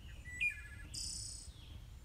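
Faint background nature sounds: a short bird chirp with quick repeated notes about half a second in, then a high insect trill lasting about half a second.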